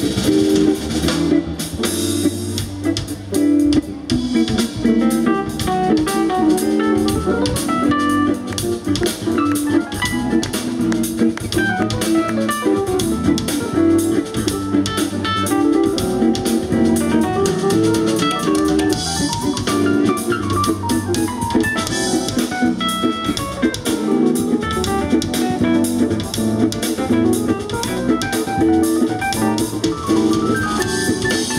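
Live jazz band playing an instrumental: hollow-body electric guitar over a drum kit, with keyboards.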